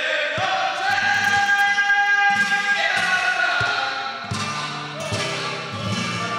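Live flamenco cante: a male singer draws out a long, wavering melismatic note over flamenco guitar. Guitar chords come to the fore in the second half.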